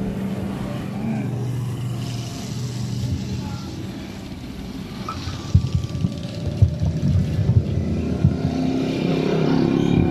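Motorcycle engine running near the street during a pause in the music. Irregular low knocks and bumps follow in the second half.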